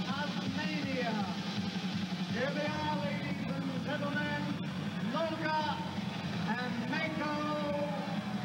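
A voice in short phrases whose pitch swoops up and down, over a steady low hum.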